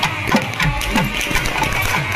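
Street band of shehnai-type reed pipes with brass bells playing a shrill, sustained melody together, over a steady beat on a barrel drum.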